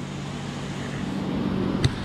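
Steady hum of a paint booth's air-handling fans running, with a single light click near the end.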